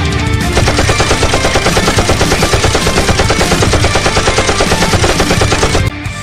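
Machine-gun fire sound effect: a rapid, even burst of automatic shots starting about half a second in and running for about five seconds before cutting off suddenly, over rock music.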